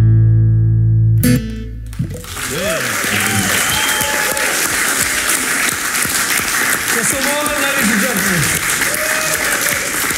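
Acoustic guitar and electric bass holding a final chord that stops sharply about two seconds in, followed by an audience applauding and cheering.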